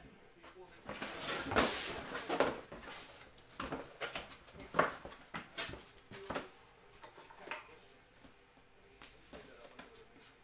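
Rustling of a large photo and its cardboard packaging being handled, followed by several short knocks and taps. It goes quieter near the end, with a few faint ticks.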